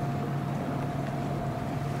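Yamaha outboard motor on a small center-console boat running slowly at low throttle: a steady low hum with a fainter, higher steady whine above it.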